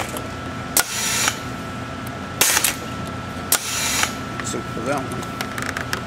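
Gorman Machine Hustler pull winder drawing 10-gauge copper wire through a toroid core with its pneumatic booster cylinder. There is a sharp click about a second in and about four short hissing strokes, over a steady high hum.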